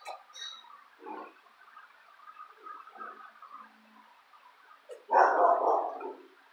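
A large dog makes a few short, soft snuffling sounds, then gives a loud gruff bark lasting about a second near the end.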